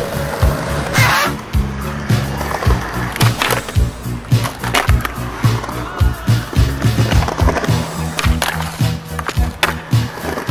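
A music track with a steady beat and a stepping bass line, over skateboard wheels rolling on concrete and the sharp clacks of the board.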